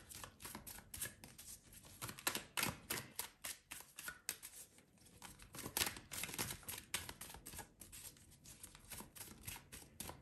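A deck of oracle cards being shuffled by hand: a continuous run of quick, irregular clicks.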